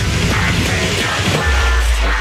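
A nu metal backing track with an electric guitar played along in drop D tuning. About a second and a half in, a deep sustained low note comes in.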